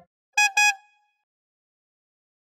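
Two quick honks of a cartoon car horn sound effect, about half a second in.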